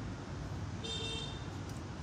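A short, high-pitched horn-like toot lasting about half a second, a second in, over a steady low hum, with a few faint clicks of hair-cutting scissors snipping.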